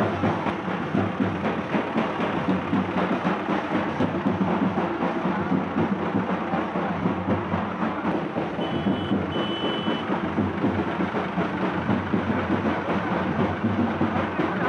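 Dense, loud din of a street procession: the engine of the vehicle pulling the decorated float runs under music from the procession. Two short high beeps sound about nine seconds in.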